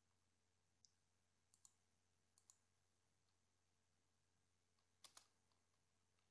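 Near silence broken by a few faint computer keyboard keystrokes, some in quick pairs, the loudest pair about five seconds in.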